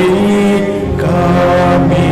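Liturgical chant sung in long held notes, with the pitch shifting to a new note about a second in.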